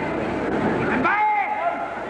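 Voices echoing in a large arena, with one man's drawn-out call about a second in, its pitch rising and then falling.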